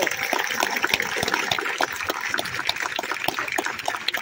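Audience applauding: many hands clapping at once in a dense, steady patter.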